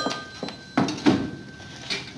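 A telephone bell dies away as the call is answered, followed by a few clunks and knocks of the handset being lifted off its cradle, the loudest about a second in.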